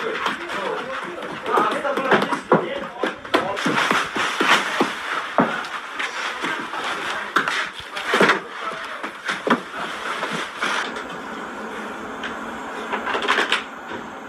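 Irregular sharp slaps and pats of bread dough being pressed and shaped by hand on a stone slab in a bakery, with people's voices in the background.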